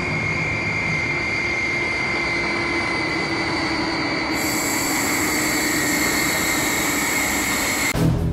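Jet airliner engines: a steady roar with a high whine that sinks slowly in pitch. A second, higher whine joins about halfway through.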